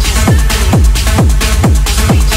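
Techno in a DJ mix: a steady kick drum a little over twice a second, each kick dropping in pitch into a heavy bass, under hi-hats and synth layers.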